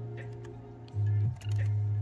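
A few light clicks from the laptop's keys or touchpad as the Restart option is selected, over a low steady hum that grows louder about a second in, breaks off briefly and resumes.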